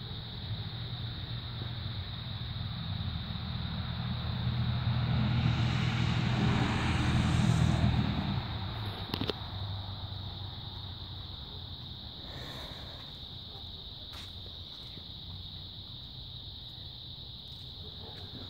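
A car passes by, its engine and tyre noise swelling over several seconds to a peak near the middle and then fading away, with a sharp click just after it passes. Underneath, crickets chirp steadily in a high, unbroken chorus.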